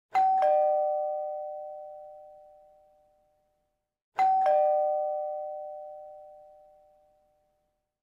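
Two-tone ding-dong doorbell chime, a high note then a lower one, sounded twice about four seconds apart, each pair ringing out and fading over about three seconds.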